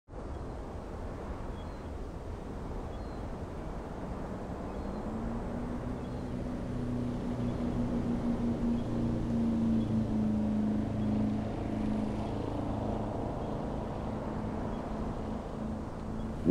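A motorboat's engine running with a steady hum over a rushing wash of noise, growing gradually louder about five seconds in.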